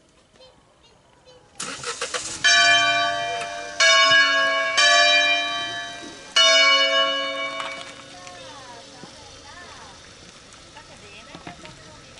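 Wheel-hung bronze church bells from a five-bell peal tuned in A, swung and rung as a funeral concerto. After a quiet start, four separate bell strikes come about a second apart, each ringing on and overlapping the next, then dying away.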